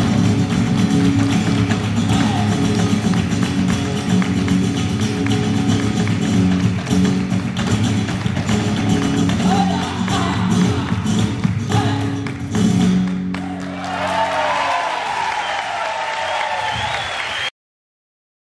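Live flamenco music: flamenco guitars over a steady low bass line, with the dancer's heel-and-toe footwork strikes, fastest in the middle. Near the end the playing gives way to voices, and the sound cuts off abruptly shortly before the end.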